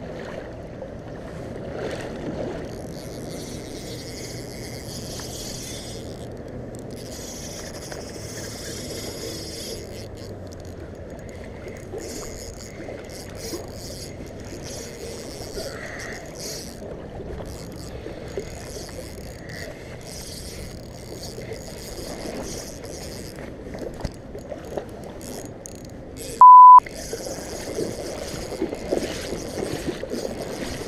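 Steady rush of river water and wind on the microphone, with a higher hiss that comes and goes. About 26 seconds in, a short loud single-tone beep cuts in, a censor bleep.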